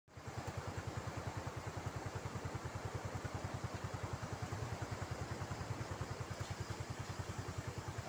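Motorcycle engine idling steadily, an even low pulse of about a dozen beats a second, over a steady rushing noise of the floodwater.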